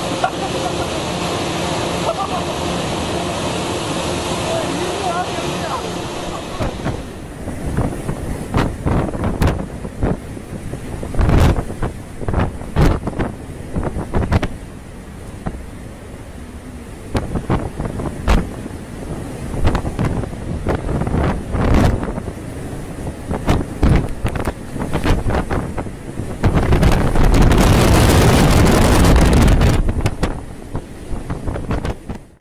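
Gale-force wind buffeting the microphone and heavy seas breaking over and against a ship's deck. The first few seconds are a steady rush, then irregular gusts and crashing bursts, with the loudest, longest rush near the end.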